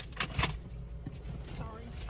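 Inside a parked car: a low steady rumble with two short clicks or knocks in the first half second as a passenger climbs into the back seat, and a faint voice near the end.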